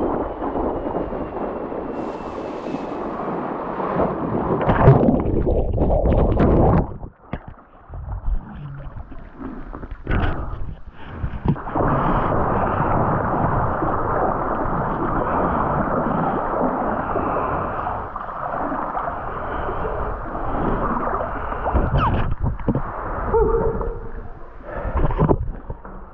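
Wind rushing over the microphone and water hissing and splashing as an electric hydrofoil board rides fast over the sea. The rush drops away briefly about a quarter of the way through, then runs on steadily.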